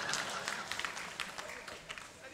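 Audience clapping in scattered claps over a low crowd murmur, dying away.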